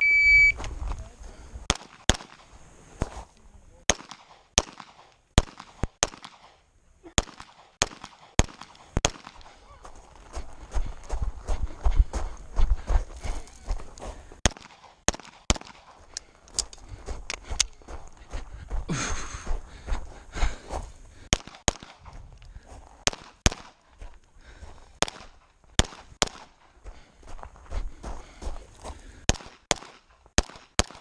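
An electronic shot timer's start beep, then a long run of pistol shots: dozens of rounds fired in quick pairs and strings, with short gaps and a low rumble between the strings.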